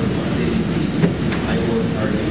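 An audience member's voice asking a question from far off the microphone, faint and hard to make out, over a steady hiss of room and sound-system noise.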